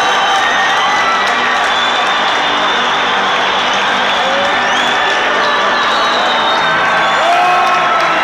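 A packed football stadium crowd cheering and singing loudly and without a break, with whoops and high whistles rising over the noise.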